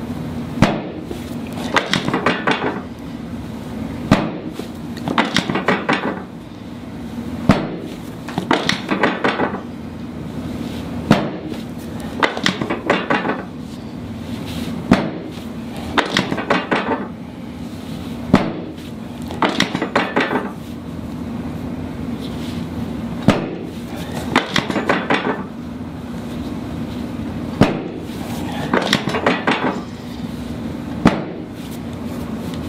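Chiropractic drop table's drop section giving way under quick hand thrusts on the mid-back: a sharp clack about every three to four seconds, eight times, each followed about a second later by a brief rattling clatter of the table mechanism.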